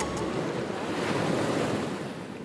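Ocean surf washing, a steady rushing noise that swells toward the middle and eases near the end.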